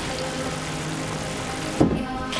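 Film-trailer soundtrack: a steady wash of outdoor street noise under faint sustained synth tones, broken by a sudden thump near the end.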